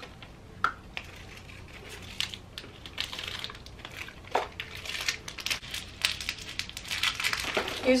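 Plastic snack wrappers crinkling and rustling as packets are handled in a cardboard box and one is picked out. The crackling comes in irregular bursts and grows busier toward the end.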